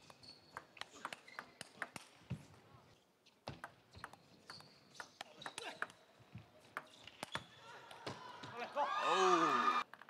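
Table tennis ball clicking off bats and table in two fast rallies, a few strikes a second with a short pause between points. Near the end a loud shout rises over swelling crowd noise and cuts off suddenly.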